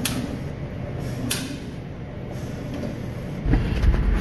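A vehicle engine's low steady rumble in a shop, with two sharp clicks in the first half; about three and a half seconds in the rumble turns much louder and closer.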